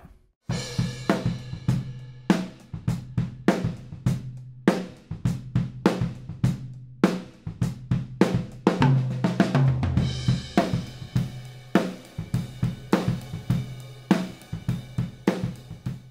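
Acoustic drum kit being played, with kick, snare, hi-hat and cymbal strikes in a steady groove. It starts about half a second in and is heard only through a Blumlein pair of AEA N8 ribbon microphones used as overheads.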